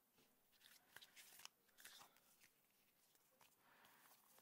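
Near silence with a few faint, soft clicks of tarot cards being handled, about a second or two in.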